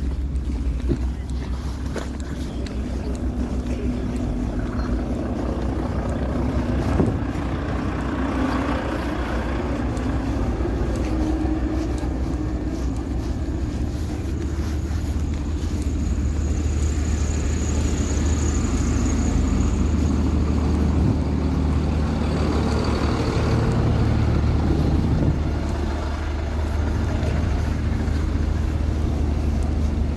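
Truck and car engines idling in a stalled traffic jam, a steady low rumble.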